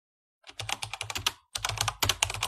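Two bursts of rapid, sharp clicking, about ten clicks a second, like typing on a keyboard. The first starts about half a second in and the second follows a brief break.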